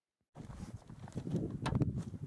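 Silent for the first third of a second, then irregular knocks, clicks and rustling of gear being handled on a shooting bench, over outdoor background noise.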